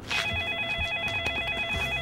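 Mobile phone ringing with an electronic trill ringtone, a rapidly warbling tone with steady higher tones over it. It starts a moment in and rings for about two seconds.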